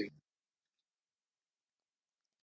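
Dead digital silence with no room sound at all, after a voice cuts off abruptly right at the start.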